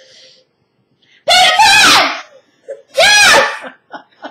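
Two loud, high-pitched shrieks of laughter from a person's voice, the first about a second in and the second about three seconds in.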